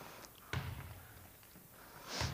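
A single thud about half a second in, with a short low boom of echo from a large gymnasium.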